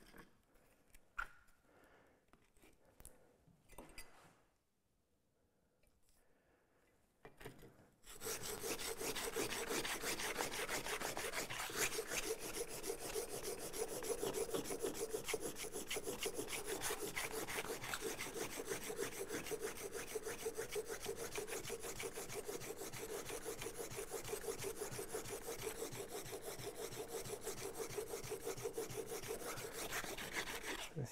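A few light knocks, then from about eight seconds in a plane iron is rubbed rapidly back and forth on abrasive paper in a steady, continuous rasping. It is coarse-grit work to grind the nail-dent nicks out of the cutting edge.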